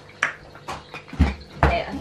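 A few short knocks and clatters, with two heavier thumps a little past the middle, from a canister vacuum cleaner's hose being picked up and handled while the vacuum is switched off.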